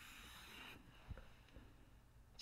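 Faint scratching of a felt-tip marker drawing a line on paper, stopping under a second in, followed by a soft click.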